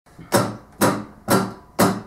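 Acoustic guitar strummed four times in an even beat, about two strokes a second, each stroke short and percussive and dying away quickly before the next.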